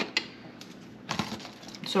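A few light clicks and taps as kitchen tongs and a plastic food container of shredded vegetables are handled, with a small cluster a little past one second in.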